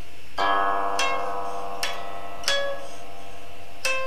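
Guqin, a Chinese seven-string zither, plucked in a slow phrase: about five notes roughly a second apart, the first a fuller ringing cluster, with some notes sliding in pitch as the stopping hand glides along the string.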